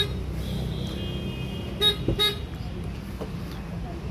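Hyundai Venue's horn giving two short chirps close together about two seconds in, the car acknowledging it being unlocked with the keyless-entry button on the door handle. A faint high steady tone sounds just before.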